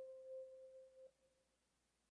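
The song's last sustained keyboard note fading out as a near-pure tone, stopping about a second in.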